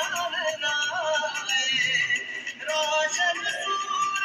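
Recorded Pakistani patriotic song (mili naghma) with singing over instrumental backing, played through a portable loudspeaker.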